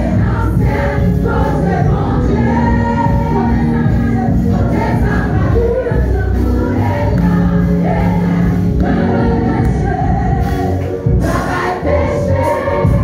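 Gospel worship song sung by a choir over steady instrumental backing, with long held notes.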